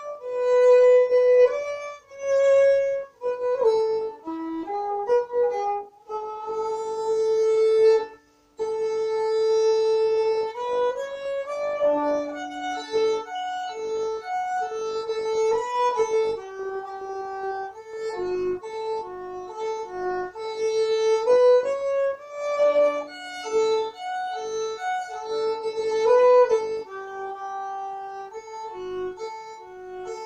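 Solo fiddle playing a Swedish sixteenth-note polska from Bingsjö, bowed unaccompanied. It starts in short phrases with brief pauses between them, stops for a moment about eight seconds in, then plays on without a break.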